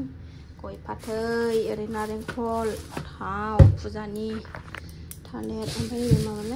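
A woman talking in short phrases, with a single dull thump about halfway through.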